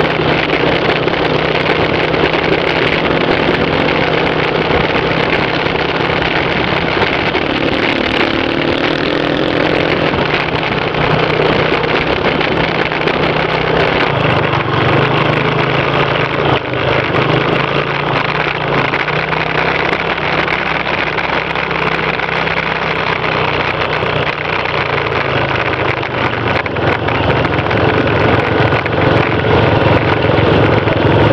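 Dirt-bike engine running steadily under way on a rough track, its pitch rising and falling as the throttle opens and closes.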